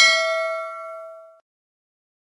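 Notification-bell "ding" sound effect from a subscribe-button animation: a single struck bell tone that rings and fades away about a second and a half in.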